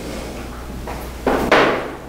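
Book pages being turned and handled at a lectern: one short papery rustle about a second and a quarter in, over a low steady hum.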